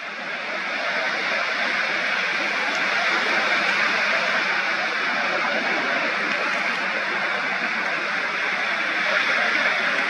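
Ocean surf breaking and washing in, a steady rushing hiss that swells slightly over the first second or so.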